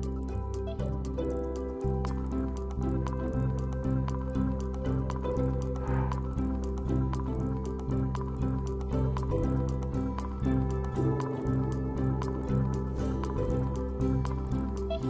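Low-pitched Tibetan Buddhist prayer chanting, several voices in unison holding long steady tones that shift every second or so, with a scatter of light clicks throughout.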